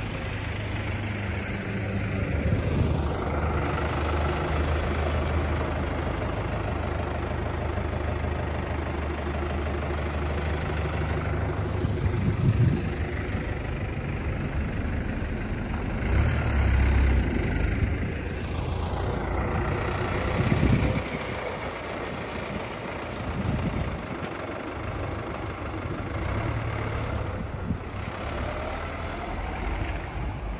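Road traffic on a snow-covered street: cars driving past one after another, swelling and fading, over the steady low hum of a heavy engine running nearby.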